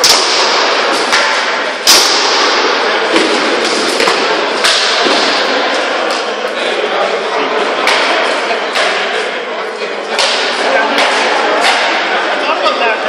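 Rattan swords striking shields and armour in armoured sparring: sharp, irregular cracks every second or two, the loudest two near the start and about two seconds in.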